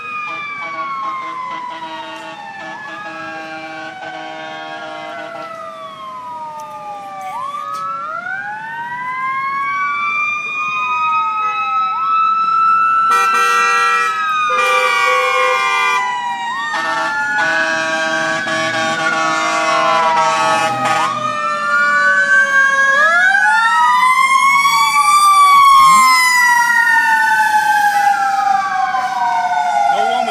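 Fire engine sirens wailing, with more than one siren rising and falling in pitch over each other and growing steadily louder as the engine approaches. Several steady horn blasts break in along the way, and the siren switches to a faster sweep near the end.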